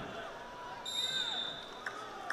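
Referee's whistle: one short, steady blast about a second in, stopping the action because the wrestlers have gone out of bounds. Arena crowd noise runs underneath.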